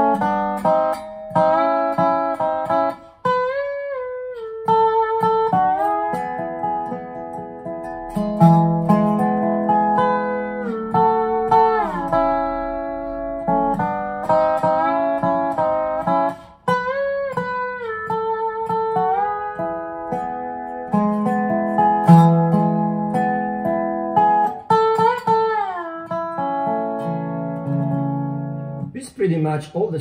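Dobro (square-neck resonator guitar) played lap-style with a steel bar: a slow melody of picked notes with bar slides gliding between pitches, over low bass notes, stopping just before the end.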